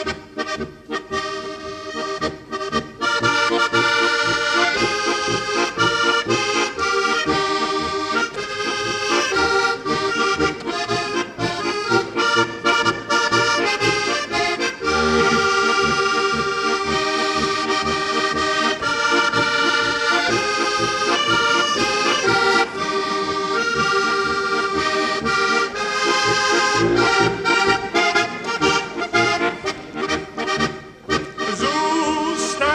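Heligónka, a Slovak diatonic button accordion, playing a polka melody instrumentally over a steady bass-and-chord beat.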